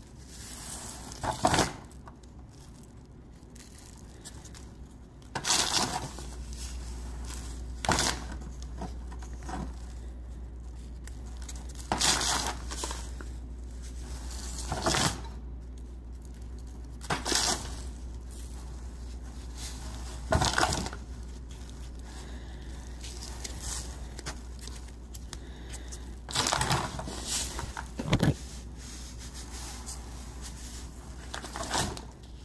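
A plastic bag of silicon carbide grit crinkling as it is handled, and loose grit crunching as it is pressed into wet JB Weld epoxy on a pistol grip. The sound comes in short, irregular bursts, about eight of them, with quieter gaps between.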